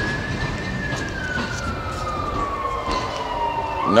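A single high, thin whine gliding slowly down in pitch for about three seconds, then rising again just before the end, over a steady background rumble.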